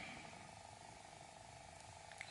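Near silence: faint steady room hiss.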